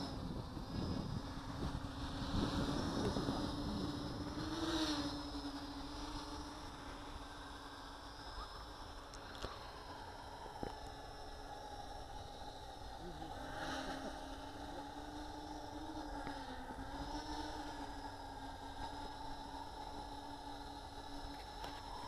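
Faint, steady buzz of a small home-built quadcopter's motors and propellers in flight. Its pitch rises and dips a little now and then as the throttle changes, and a higher tone joins about halfway through.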